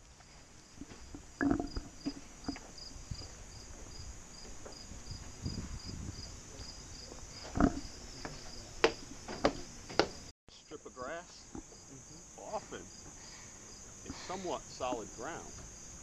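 Insects trilling steadily in high, dense vegetation, with a chirp pulsing about three times a second. Footsteps and knocks on wooden stairs sound through the first part, and after a cut about ten seconds in, faint voices come in under the insects.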